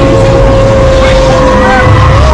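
Simulator-ride soundtrack: a race vehicle's engine whine held at one steady pitch over a loud, deep rumble.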